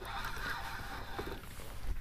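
A spinning reel being wound by hand while a fish is on the line, heard faintly against steady wind and water noise.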